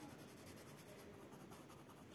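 Faint scratching of a green coloured pencil shading in a small box on a paper workbook page.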